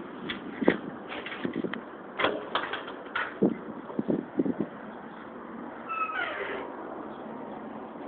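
A run of light knocks and clatter, then a short high squeal about six seconds in.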